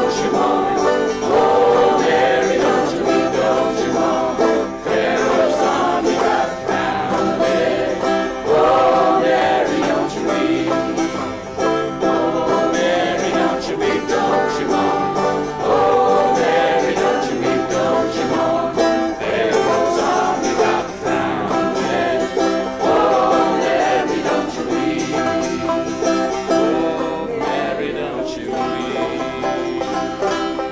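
A folk sing-along: a man singing lead with a banjo, acoustic guitars strumming, and other voices singing along. The music fades away at the very end as the song finishes.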